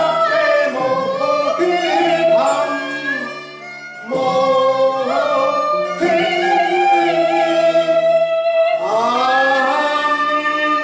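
A man and a woman singing a Cantonese opera duet with sustained, gliding vocal lines over instrumental accompaniment. The singing eases briefly a little past three seconds in and picks up again at about four seconds.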